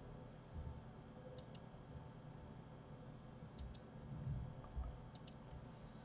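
Faint clicks of a computer mouse being operated, three quick double clicks about two seconds apart, over low room hiss.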